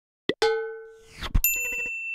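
Logo-animation sound effects: a short pop, then a ringing ding that fades away, a rising swish ending in a thump, and a bright high chime that rings on over a quick run of about five ticks.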